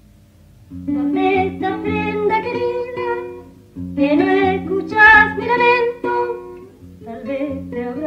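Women singing to an acoustic guitar, coming in about a second in and going in three phrases with short breaths between.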